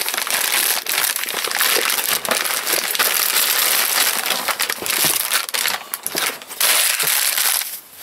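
Plastic mailer bag and clear plastic wrapping crinkling and tearing as they are ripped open and handled by hand, a continuous dense rustle that stops shortly before the end.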